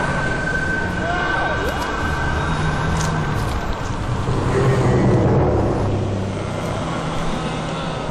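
A dramatic sound-effects mix: a steady low rumble with a steady high tone that stops about two seconds in, and brief gliding, voice-like cries early on. The rumble swells around the middle.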